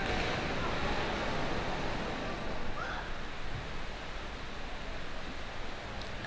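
Indoor swimming pool ambience: a steady wash of swimmers splashing in the lanes, with a faint murmur of voices. It eases slightly about halfway through.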